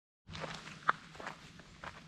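Faint footsteps on a sandy gravel road as a person walks up to a parked bicycle, uneven steps with one sharper click just under a second in.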